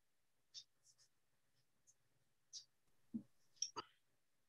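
Near silence on an open meeting microphone, broken by scattered faint ticks and clicks. About three seconds in there is a dull knock, then a sharper clack close after it.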